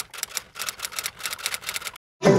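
Typewriter sound effect: a fast, even run of key clicks, one per letter as the text is typed out.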